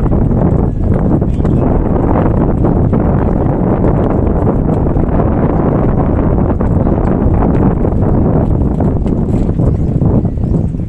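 Wind buffeting the microphone on an open boat: a loud, steady low rumble with rapid crackling.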